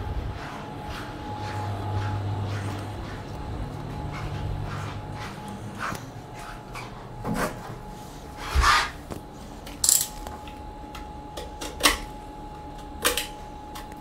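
Hand-handling noises: a handful of sharp clicks and knocks of small objects and tools being picked up and moved, from about seven seconds in, over a steady low hum.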